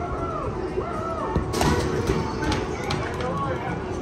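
Busy arcade din: electronic game-machine sounds and music mixed with voices, with arching beeps and a sharp knock about a second and a half in.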